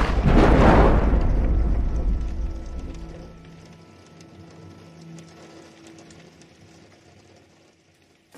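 A thunderclap rumbling and fading away over about three seconds, over steady rain.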